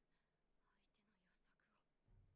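Near silence, with faint, very quiet speech.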